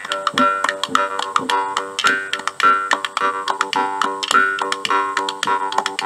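Jaw harp playing a rhythmic tune: a steady drone with the melody picked out in its shifting overtones, plucked in a quick, even beat.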